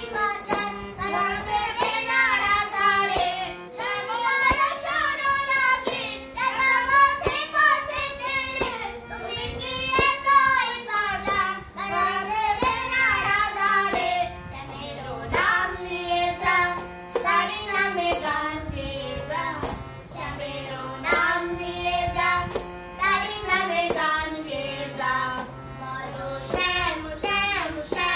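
A young girl and a woman singing a Bengali Krishna bhajan together to a harmonium, which holds steady chords under the voices. A regular sharp tick keeps the beat throughout.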